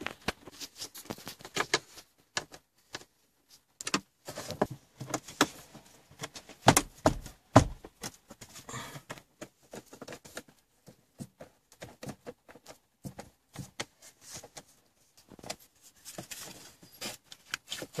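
Irregular small clicks, taps and scrapes of a screwdriver and screw being worked into a car's plastic dashboard console trim, with a few sharper knocks around the middle.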